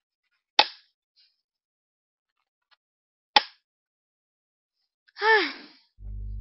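Two sharp knife chops on a wooden cutting board, about three seconds apart, then a short falling groan from a woman near the end.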